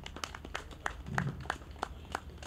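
Sparse, light hand clapping from a small audience: scattered, irregular claps, about five a second.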